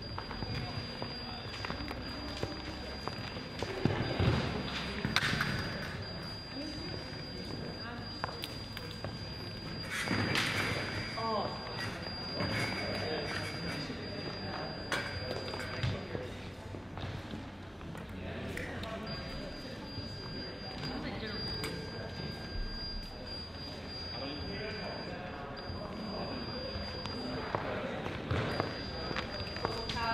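Indistinct voices and scattered thuds and knocks echoing in a large sports hall, with a thin steady high tone that comes and goes.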